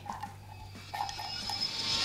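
A silicone spatula scraping sweetened condensed milk out of a metal can, the thick milk dripping into a bowl of cream. The high scraping hiss grows louder near the end.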